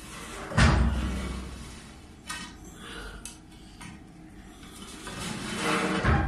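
Metal knocking and scraping inside a heavily sooted oil-fired boiler during cleaning. A heavy thud comes about half a second in and dies away slowly, followed by a few lighter clicks and knocks.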